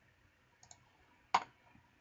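Computer mouse button clicking: a faint double tick about half a second in, then one sharp click about a second and a third in, dismissing a dialog box.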